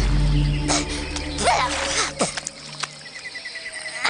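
Cartoon soundtrack: a held low music chord that fades out about two-thirds of the way through, with a few short sliding, squelchy mud sound effects. Cricket-like insect chirping from the jungle ambience comes up near the end.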